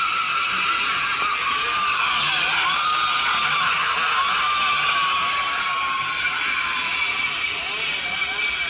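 Chainsaw-wielding Halloween animatronic's built-in speaker playing a running chainsaw sound effect: a steady, tinny buzz whose pitch wavers up and down as it runs.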